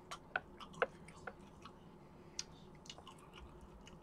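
A person chewing a mouthful of food close to the microphone, with a few short, faint clicks and smacks, several in the first second and one more past the middle.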